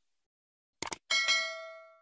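Subscribe-button animation sound effect: a quick double click about a second in, then a bright bell ding that rings out and fades away.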